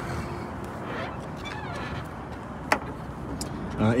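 Steady background noise with one sharp click about two-thirds of the way through.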